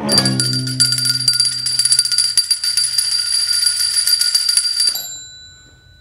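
A bell rung rapidly and continuously for about five seconds, then stopping abruptly and ringing out briefly. Under its start, the low notes of the string ensemble's final chord fade away.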